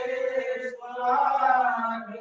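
A devotional prayer chanted slowly in long held notes. One phrase ends just under a second in, and after a brief break the next phrase starts and swells.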